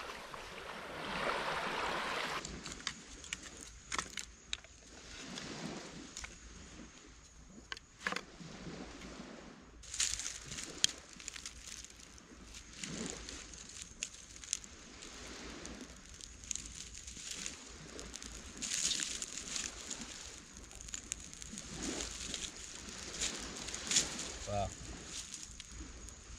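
Small waves lapping on the shore for the first couple of seconds. Then a quieter stretch of scattered sharp clicks and snaps as dry twigs are handled and a small campfire is built and lit, over a faint steady high-pitched tone.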